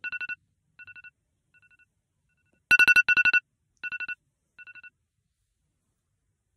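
Electronic alarm or ringtone beeping: quick bursts of rapid pulsed beeps on one high pitch. A loud burst comes at the start and another about three seconds in, and each is followed by fainter and fainter repeats until it stops about five seconds in.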